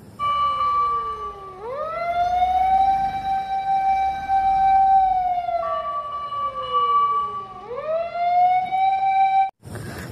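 Japanese ladder fire engine's siren wailing. It climbs about 1.5 s in, holds a long high note for about three seconds, slowly falls, climbs again near the end, and cuts off suddenly just before the end.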